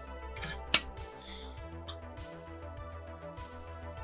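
Soft background music with steady held tones, broken by a sharp click about three-quarters of a second in and a fainter click just before two seconds.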